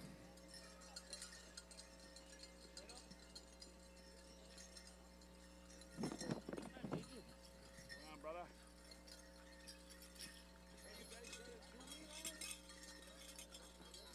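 Near silence: faint arena room tone with a steady low hum, broken by a brief word over the PA about six seconds in and faint distant voices.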